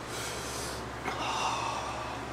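A person's forceful breaths: a hissy rush of air, then a louder, sudden one about a second in.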